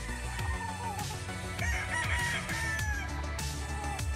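A gamecock crowing: one long, drawn-out crow starting about half a second in and lasting roughly two and a half seconds, over background music with a beat.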